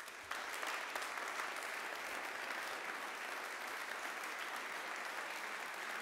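Audience applauding, starting a moment in and holding steady.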